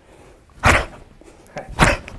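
Two short, sharp bursts about a second apart as Chen-style taijiquan power is issued in a cannon fist drill.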